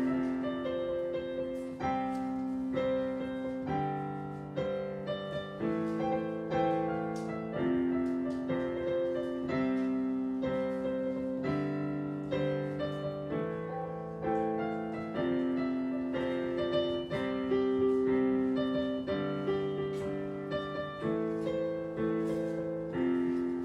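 Digital piano played at a slow, even pace, a new sustained chord or note roughly every second.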